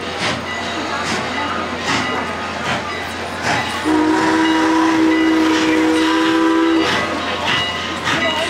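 Steam locomotive whistle sounding one long chord of several tones for about three seconds, starting about four seconds in. Under it, slow, evenly spaced exhaust chuffs from the locomotive working as it gets under way.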